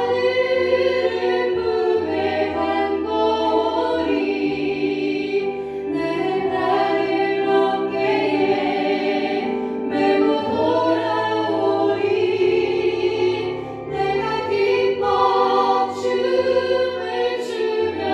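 A Korean worship song: voices singing long, sustained melodic lines over an instrumental accompaniment with a slow-moving bass line.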